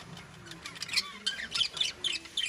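Budgerigars chattering: a quick run of short, high chirps and squawks, starting about half a second in.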